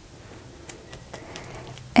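Faint rustle of sublimation paper being pressed and smoothed by hand around a ceramic mug, with a few light ticks.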